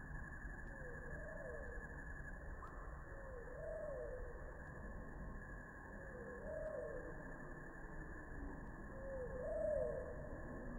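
A bird's call: a short call that rises and then falls in pitch, repeated about four times, every two to three seconds, over a steady low hiss.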